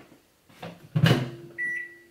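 Microwave oven: its running hum stops at the very start, a loud clunk of the door being opened comes about a second in, then one short high beep.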